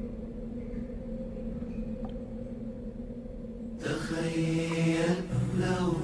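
A steady low drone opens the Arabic nasheed. About four seconds in, a male voice enters chanting a slow melody over it.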